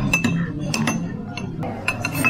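Metal spoon clinking against a porcelain soup cup, several light clinks with a brief ring as the soup is spooned up.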